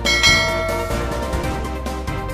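A bright bell chime sound effect rings just after the start and dies away within about a second, over background music with a steady beat.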